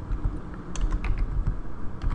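Computer keyboard being typed on, a run of separate, irregularly spaced keystrokes as a short word is entered.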